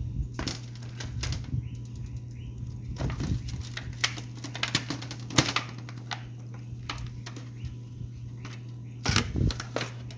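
Irregular clicks, knocks and scrapes of a metal fork against a thin disposable aluminium foil pan as the meat in it is moved about, with the loudest knock about five and a half seconds in and a burst of clatter near the end. A steady low hum runs underneath.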